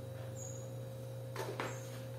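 A few quick plastic clicks and knocks about one and a half seconds in, from a plastic cleaning-product bottle and spin-mop bucket being handled. A steady low hum runs underneath.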